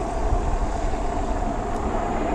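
Wind rushing over the microphone, with the steady hum of fat tires rolling on asphalt from an electric bike moving at about 19 mph.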